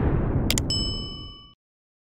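Logo sting sound effect: a deep rumbling whoosh fades out, and about half a second in two sharp clicks lead into a bright metallic ding that rings for about a second before the sound cuts to silence.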